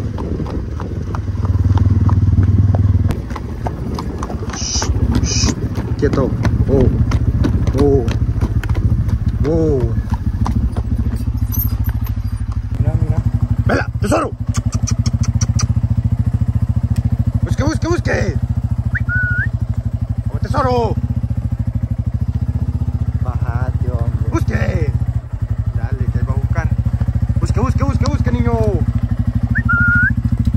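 Motorcycle engine running steadily at low speed, with drawn-out calls sounding over it every few seconds.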